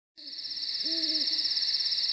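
An owl hooting twice, a short hoot as the sound fades in and a longer one about a second in, over a steady high-pitched insect trill like crickets.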